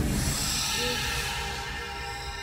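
TV transition music sting: a sustained musical chord ringing on and slowly fading after a hit.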